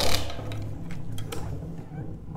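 LEGO Ninjago spinner spinning on a tabletop on its clear dome tip: a low, steady whirring hum with a few faint ticks, slowly fading.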